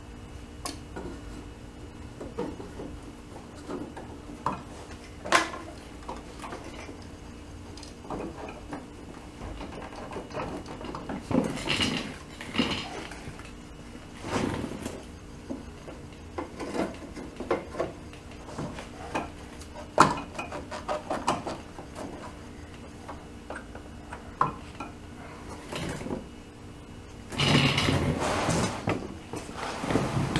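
Engine-bay parts of an air-cooled VW Beetle being refitted by hand: scattered metallic clicks, knocks and rattles as hoses and parts are handled and fastened, with two longer spells of clatter, one near the middle and one near the end.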